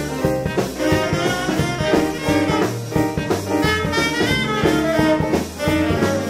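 Live swing jazz from a small band: trumpet and saxophone playing together over a drum kit.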